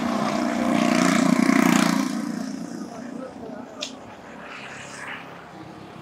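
A road vehicle passing close by: its noise swells to a peak in the first two seconds and fades away. A single sharp click comes a little later, followed by quieter street sound.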